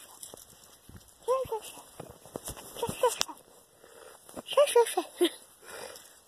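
Small dog whining in short rising-and-falling cries, a few at a time: about a second in, again near three seconds, and a run of several near five seconds. Light knocks of phone handling fall between the cries.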